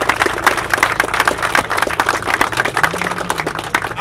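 A group of people applauding: many overlapping hand claps.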